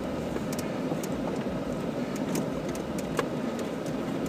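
Off-road vehicle creeping down a rocky dirt trail, heard from inside the cab: a steady low rumble of engine and tyres, with scattered sharp clicks and knocks from rocks and rattling parts.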